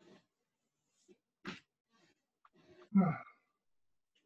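A person breathing hard while holding a deep kneeling hip-flexor stretch: a sharp breath out about a second and a half in, then a loud voiced sigh about three seconds in.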